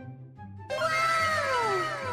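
A cat's meow, loud and sudden about two-thirds of a second in, its pitch falling over about a second and repeated in trailing echoes, over background music.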